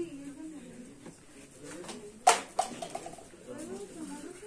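Quiet, indistinct voices of people in a small room, with a sharp knock a little over two seconds in and a lighter one just after.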